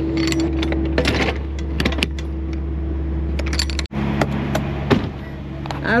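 A semi truck's steady engine hum under a run of sharp metallic clicks and clanks from the trailer's door lock rod and latch hardware being handled. Just before two-thirds of the way through the sound cuts abruptly to a different steady hum, with one more knock.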